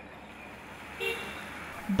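Street traffic ambience with a steady hum of road noise and a short car horn toot about a second in.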